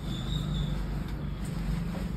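A low, steady motor hum.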